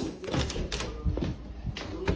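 Footsteps and the handling noise of a hand-held phone being carried: a scatter of light, irregular clicks and knocks over a low rumble.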